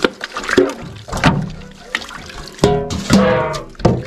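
A stainless steel dog bowl is scrubbed by hand in a sink of soapy dishwater: water sloshing and the bowl knocking against the steel sink. A few drawn-out squeaks come near the end.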